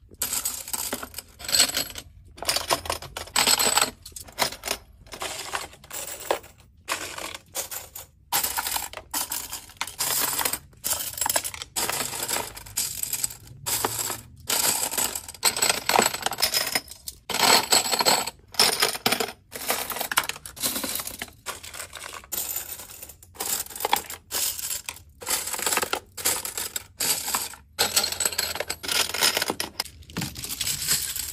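Metal drinking straws clinking and rattling against one another as handfuls are pulled from plastic bins and bunched together: many quick metallic clinks in bursts with short pauses between.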